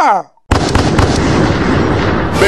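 A blast-like sound effect, crackling like an explosion or fireworks, bursts in suddenly about half a second in. It holds loud for about a second and a half as dense noise with a low rumble, then eases off.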